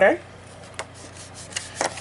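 Thick cardstock being handled and slid on a work surface: a soft rub, a light click about a second in, and a brief rustle near the end.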